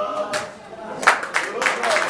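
Singing voices end just after the start; about a second in, an audience breaks into applause, many hands clapping.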